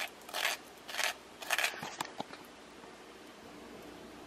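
Crisp toasted bread of a sandwich crunching in three short, crackly bursts in the first two seconds, followed by a few faint clicks.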